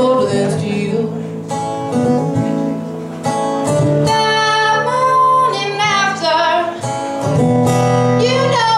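A woman singing with her own strummed acoustic guitar, live. Her voice grows stronger about halfway through, holding long notes with vibrato.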